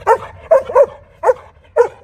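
A German Shepherd barking on command, five short, sharp barks in quick succession.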